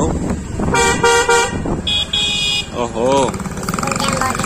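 Vehicle horns honking in dense two-wheeler traffic: three short toots about a second in, then two higher-pitched beeps, over steady motorcycle engine and road noise.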